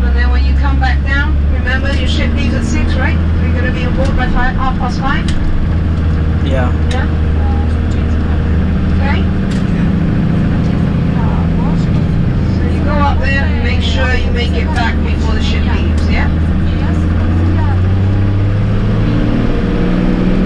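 Minibus engine and road noise heard from inside the moving vehicle, a steady low hum, with voices talking at times over it.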